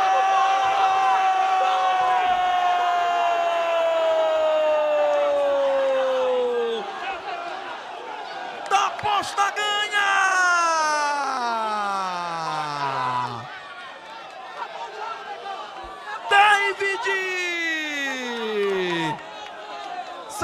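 A Brazilian sports commentator's drawn-out goal cry: one long held "goool" that slides slowly down in pitch for about seven seconds. Two more long shouts follow, each falling steeply in pitch, with crowd cheering underneath.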